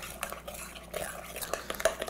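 Metal spoon stirring thick brownie batter in a ceramic mixing bowl, with soft scraping and a few light clicks of the spoon against the bowl, as the last of the melted butter is blended in.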